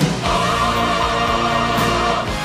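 Choir singing held notes over an instrumental accompaniment with a steady beat.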